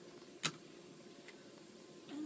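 A single sharp click about half a second in, like a hard plastic phone case being handled or set down, with a fainter tick later over faint room hum.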